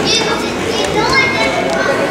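Children's voices: high-pitched child speech and calls, loudest near the start, over a steady background of voices.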